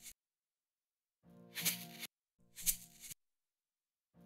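Soloed shaker track from a song mix played back in two short snippets, each under a second and cut off abruptly, a bright, hissy shake over faint pitched tones. It is an A/B of the shaker with and without saturation, which is meant to soften it and make it sound almost an octave lower.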